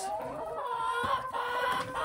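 Flock of hens clucking, with several drawn-out calls that overlap and hold steady.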